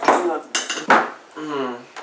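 Three sharp clattering knocks in the first second, then a man's voice holding a low sung note near the end.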